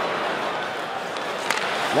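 Ice hockey arena crowd noise, a steady murmur, with a single sharp crack of a stick hitting the puck about one and a half seconds in as a long pass is made.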